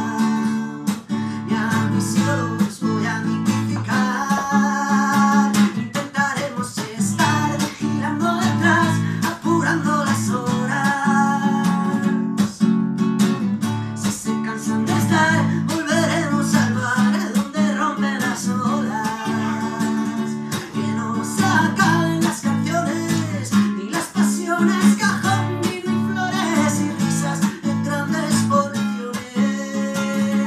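Acoustic guitar strummed in a steady rhythm, with a man singing a Spanish-language pop song over it.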